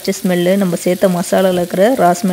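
Wooden spatula stirring potatoes and spices in a non-stick frying pan. Each quick stroke draws a squeaky scraping tone, about three strokes a second, over a light sizzle.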